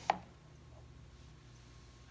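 A single short click right at the start, then quiet room tone with a faint steady low hum.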